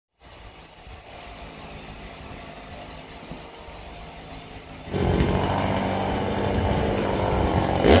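Chainsaw engine idling, faint for the first five seconds and then suddenly much louder and steady.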